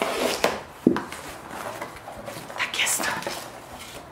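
A knife slicing through packing tape along a cardboard box's seam, with cardboard scraping and rustling and a sharp snap a little under a second in as the tape or flap gives.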